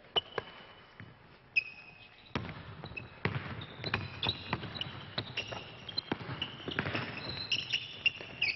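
Basketball bouncing and sneakers squeaking on a gym floor during a team drill. There are repeated knocks and short high squeaks, getting busier about two seconds in.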